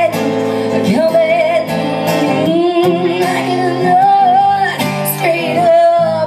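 A woman singing live into a microphone over acoustic guitar accompaniment, holding long, wavering notes.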